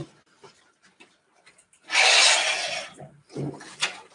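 A paper envelope being torn open, one noisy rip lasting about a second midway through.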